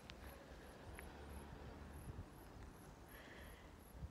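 Faint, high-pitched chirping in short, regular pulses, about three a second, that sounds like grasshoppers.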